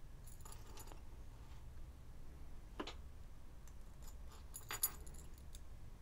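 Light metallic clicks and clinks of split-ring pliers, a small steel split ring and barrel swivels being handled while the ring is opened and fed onto the lure; a few scattered clicks, the loudest cluster near the end.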